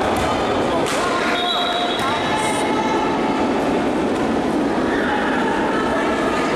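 Steady, reverberant din of an indoor futsal match in play, with players' voices and a few short, high squeaks.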